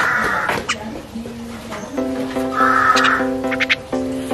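Harsh, grating calls of Javan mynas, once at the start and again about three seconds in, with a few sharp clicks. Background music with an even pulse comes in about halfway through.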